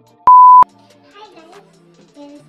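TV colour-bar test-tone beep: one steady, very loud beep of about a third of a second that starts and stops abruptly with a click, over soft background music.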